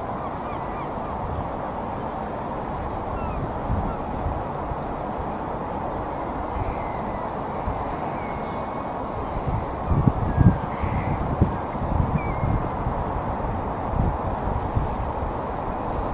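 A large flock of shorebirds calling all together, many overlapping calls merging into a steady chatter, with a few higher chirps above it. Irregular low thumps come in over the second half.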